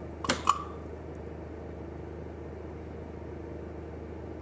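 Steady low mechanical hum of equipment, with two brief sharp sounds about a third and half a second in.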